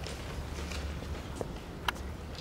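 Quiet lecture-theatre room tone with a steady low hum, broken by a few faint clicks and one sharper click shortly before the end.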